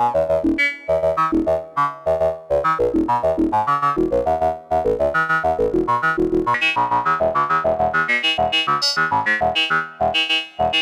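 Hexinverter Mindphaser complex oscillator playing a fast, steady sequence of short enveloped synth notes, about six a second, jumping between pitches. From about six seconds in, the tone grows brighter and more folded as its wavefolder knobs are turned.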